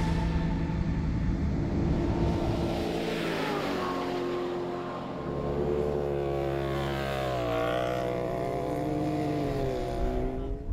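Side-by-side rally buggy engines running under throttle on sand. The engine note falls about three to five seconds in, then holds and rises and falls with the throttle.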